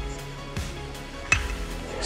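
Background music, with a single sharp crack of a baseball bat hitting a pitched ball about a second and a third in.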